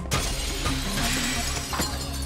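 A glass pane shattering as a door's window is smashed in, the breaking glass hitting suddenly and scattering, over a film score with a steady bass line.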